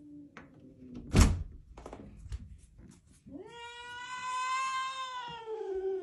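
A doorknob is turned and the door latch clunks about a second in, followed by a few light clicks. Then, about halfway through, a domestic cat gives one long, drawn-out meow that rises and then slowly falls, still going at the end.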